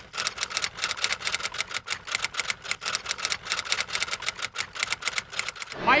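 A fast, even run of light, sharp clicks, about nine a second, that stops shortly before the end.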